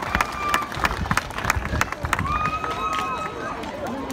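A crowd of children chattering and calling out, with many sharp taps and knocks scattered through it, and a few drawn-out high calls in the second half.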